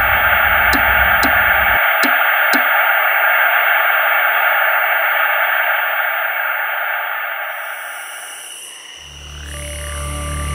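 Television static hiss, with a run of about five sharp channel-switching clicks about half a second apart in the first few seconds. The hiss fades away over a couple of seconds, and a low ambient music drone with slowly rising and falling tones comes in near the end.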